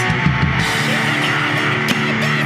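Fast hardcore punk instrumental: distorted electric guitar, bass and drum kit at full volume, with no vocals.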